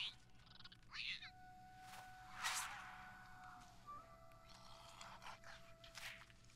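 Faint cartoon soundtrack: a winged lemur character's short squeaky chirps over soft held notes of background music.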